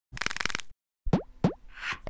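Animated logo sting sound effects: a quick burst of rapid clicks, then two falling 'plop' blips about a third of a second apart, and a short whoosh near the end.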